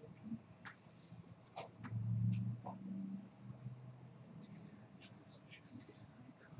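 Quiet room sounds: scattered light clicks and taps, with a brief low murmur about two seconds in.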